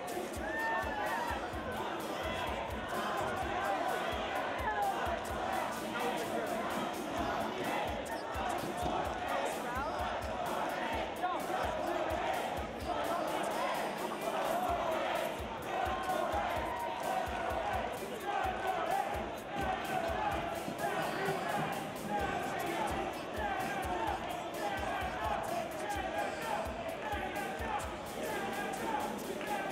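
Crowd in a large gym: many voices talking and calling at once over background music, with scattered low thuds.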